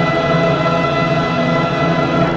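Live symphony orchestra holding a loud, sustained full chord.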